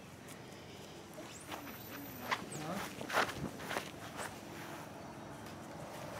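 Footsteps through grass and dry leaf litter, irregular, with a few louder steps about two and three seconds in.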